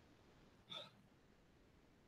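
Near silence: room tone, with one brief faint vocal sound from the man a little under a second in.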